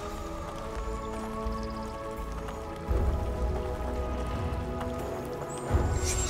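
Background film music of sustained held chords, with a low rumble coming in suddenly about three seconds in.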